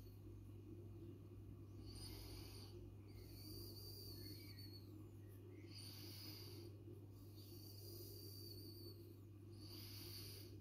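Near silence: a faint steady low hum, with a soft hiss that comes back about every one to two seconds.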